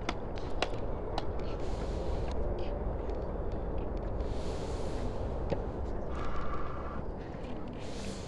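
Tennis court ambience: a few sharp knocks in the first second or so, over a steady low rumble with two stretches of hiss partway through.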